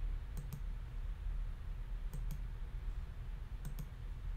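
Computer mouse button clicking three times, each click a quick press-and-release pair, over a steady low hum.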